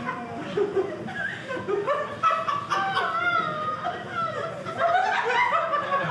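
Audience laughing and chuckling, mixed with wordless voice sounds.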